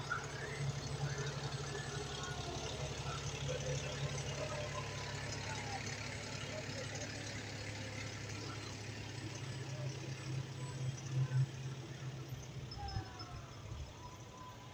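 Fire truck's diesel engine running as the truck rolls slowly past, a steady low rumble that drops away about a second before the end.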